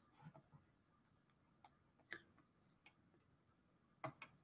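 Near silence, with a few faint, scattered clicks, the clearest about two seconds in.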